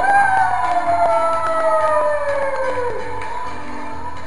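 Loud dance music with one long "woo" whoop over it: the whoop jumps up at once, then slides slowly down in pitch for about three seconds.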